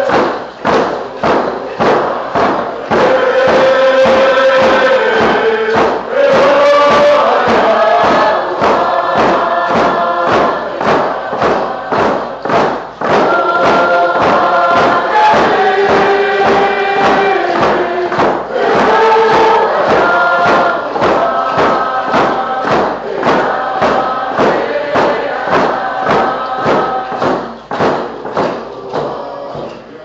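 A large group singing a Canoe Journey song in unison over a steady, even drum beat, the sung notes held and sliding between pitches.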